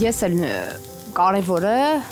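A woman speaking Armenian in an emotional tone, with soft background music under her voice.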